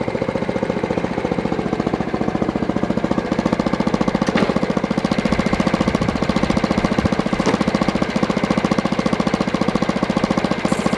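Small petrol engine of a portable bandsaw sawmill running steadily, a fast, even putter.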